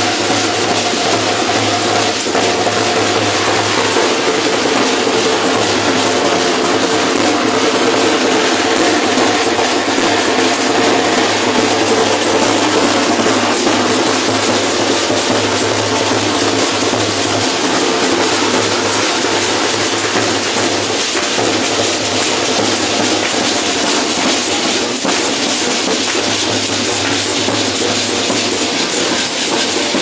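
Drumming on a large bass drum for a street dance procession, over a dense, steady clatter that never lets up.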